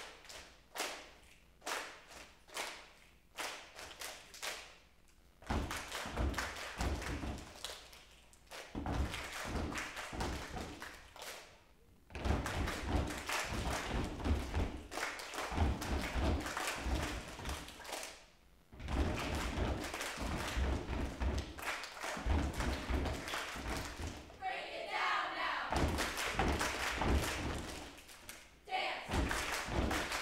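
A choir performing a body-percussion piece: rhythmic hand claps and taps, joined after about five seconds by heavy thigh-slap thumps, with group voices coming in near the end.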